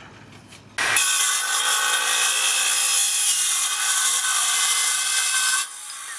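Makita XGT 40V CS002G cordless cold-cut metal circular saw cutting through 5 mm thick steel angle iron. The cut starts about a second in and runs loud, steady and high-pitched, then stops near the end and the motor begins to wind down with a falling pitch.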